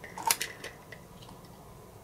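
A few light clicks and taps in the first second as steel digital calipers are moved against a polymer pistol frame, then quiet room tone.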